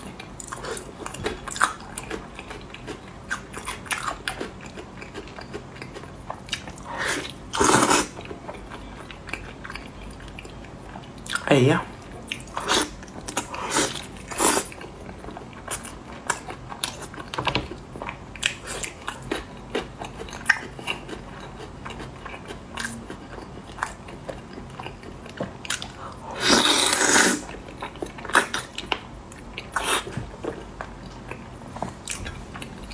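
Close-miked eating of a braised pig's trotter: wet chewing and biting into the soft skin, with many small clicking mouth sounds. A few louder noisy bursts stand out, the longest about three seconds before the end.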